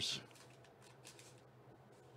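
Stiff trading cards sliding against one another as a stack is flipped through by hand: faint rustles and a few soft ticks.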